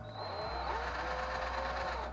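Cordless drill spinning up and then running steadily, its thin bit reaming out the hole in a small carved wooden lure body. The hole is being widened so the lead shot weights will fit.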